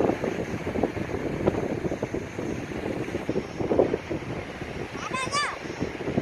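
Gusty wind buffeting the microphone, rising and falling unevenly. About five seconds in, a brief high, warbling sound rises and falls several times in quick succession.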